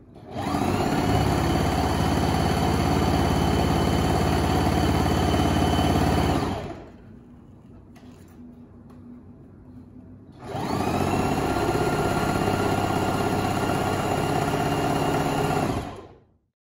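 Electric sewing machine stitching fabric at a steady speed in two runs of about six seconds each, with a pause of about four seconds between them.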